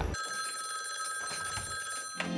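A 1970s telephone's bell ringing steadily for about two seconds, then cutting off.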